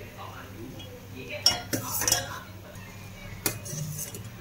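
Steel spoon stirring tea in a stainless-steel saucepan and knocking against its side, with a few sharp metallic clinks about a second and a half in, around two seconds and again near the end.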